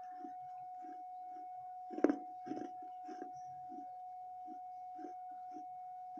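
Close-up mouth chewing of a thick baked-clay saucer: a soft grinding chew about twice a second, with a sharp crunch about two seconds in and a smaller one half a second later as a piece breaks between the teeth. A steady faint tone hums underneath.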